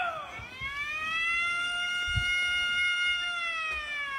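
A teenage boy giving one long, high-pitched call through cupped hands. The call rises at the start, holds steady, then slides down near the end.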